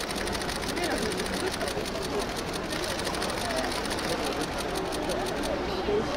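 Several people chatting at once, with no single clear voice, and a fast, even clicking over the talk that stops about five and a half seconds in.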